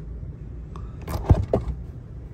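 A few soft knocks and handling noises, the loudest about a second in, over a low steady hum.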